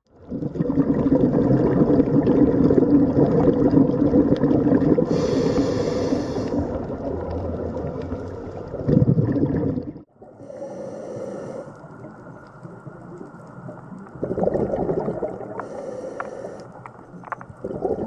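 Steady low rumble and water noise of a glass-bottom boat under way, cutting off sharply about ten seconds in. It gives way to the quieter, muffled water sound of an underwater camera, with swells of gurgling near the end.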